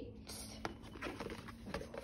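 Light rustling of paper and cardboard packaging being handled, with a soft tap a little over half a second in.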